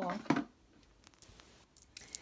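A spoken word trails off, then faint handling sounds: a few light clicks of the mala's stone beads knocking together as it is turned in the hand, about a second in and again near the end.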